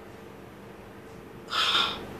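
Quiet room tone with a faint steady hum, then near the end a tearful woman's short, sharp intake of breath.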